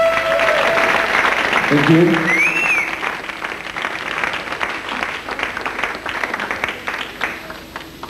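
Audience applauding and cheering as a synth-pop song's last held synthesizer note dies away, with a short rising whistle from the crowd; the clapping thins out and stops near the end.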